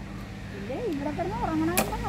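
A single sharp crack near the end as a blade cuts into the thin plastic jar stuck over a dog's head.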